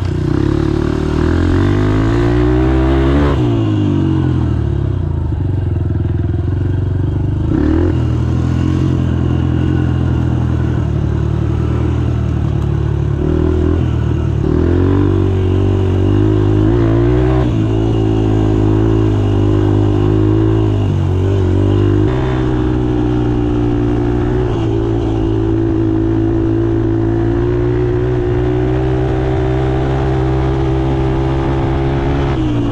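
Honda CRF150F trail bike's single-cylinder four-stroke engine running under way on a dirt track, its pitch climbing as it accelerates and dropping back at each gear change, several times over.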